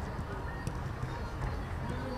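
Outdoor football training-ground ambience: faint, indistinct voices of players calling out over a steady low rumble, with a couple of sharp knocks.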